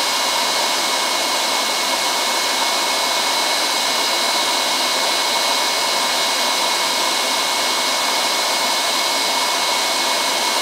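Vacuum cleaner running steadily with an even whine, left on to suck yellow jackets into the soapy water in its tank.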